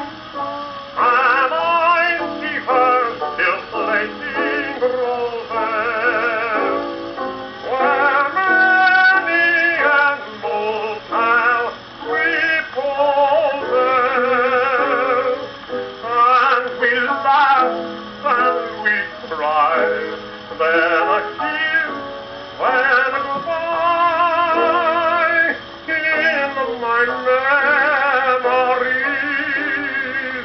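A 1920s 78 rpm shellac record playing through an acoustic Columbia Viva-Tonal phonograph, its sound cut off in the highs. A melody with a heavy, wavering vibrato carries over piano accompaniment, with no clear sung words.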